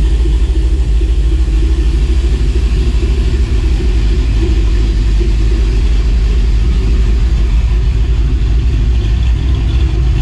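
Dodge Dakota R/T's 5.9L Magnum V8, built with aftermarket heads and cam, idling steadily and loudly soon after a cold start. It is running on a fresh tune revision that is still too rich, with fuel being pulled to compensate for a high-volume fuel pump.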